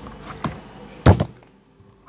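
A pair of metal scissors set down on a cloth-covered table: one dull thunk about a second in, the loudest sound, after a lighter click just before.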